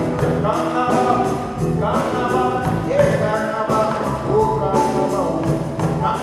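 Live West African (Malian) band playing with a steady beat, guitars, bass and drums under sung vocals.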